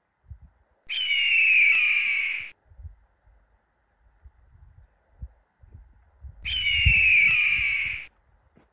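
A soaring hawk giving two long descending screams, one about a second in and another near the end.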